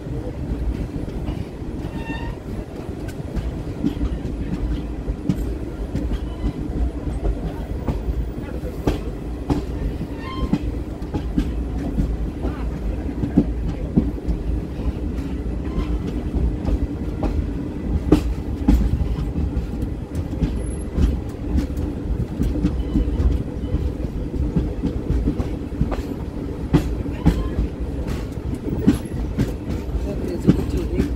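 Passenger train coach rolling slowly out of a station, heard at its open doorway: a steady low rumble of the running gear with frequent, irregular clicks and knocks of the wheels on the rails.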